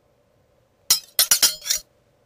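A quick run of about five sharp, ringing clinks of hard objects striking, all within about a second, over a faint steady hum.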